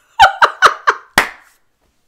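A woman laughing in five short, loud bursts, about four a second, stopping after about a second and a half.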